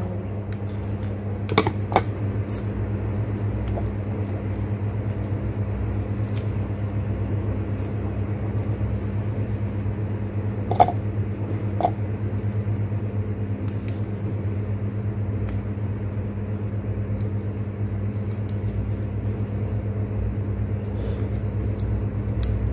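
A steady low machine hum throughout, with a few light clicks and crinkles of a plastic ice candy wrapper being handled and tied.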